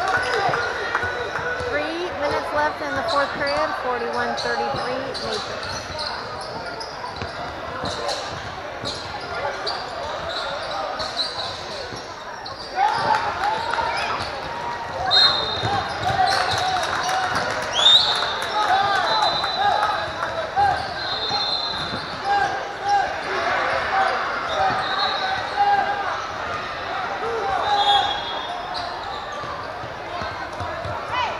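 Basketball being dribbled on a hardwood gym court, echoing in a large hall, with indistinct voices of players and spectators. Short high squeaks come at intervals in the second half.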